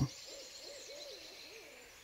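Faint owl call, a single wavering hoot that rises and falls in pitch several times, over a soft high hiss of night-forest background.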